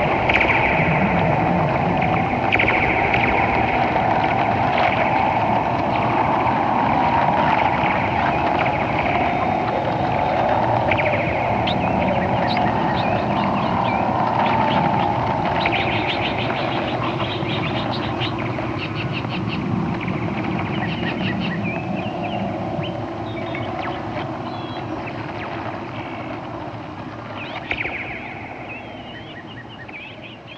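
Sound-art soundtrack of amplified natural sound: a steady rushing drone with scattered chirps and ticks, slowly fading out near the end.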